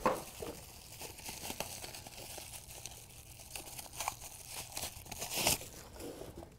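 Plastic packaging bag crinkling and rustling as a small electronic unit is unwrapped from it, with a louder rustle about five and a half seconds in.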